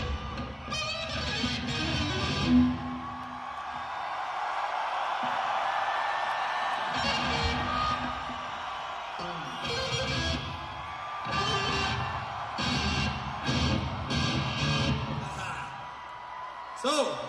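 Loose, unstructured electric guitar playing on stage between songs: a few seconds of low, sustained playing, then irregular short strummed chords from about seven seconds in, over steady crowd noise.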